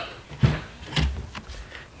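Two sharp plastic clicks and knocks, about half a second apart, from pulling the manual fuel-door release pull inside a Volvo S70's cargo-area side trim, the override that unlatches the fuel door when its actuator motor fails.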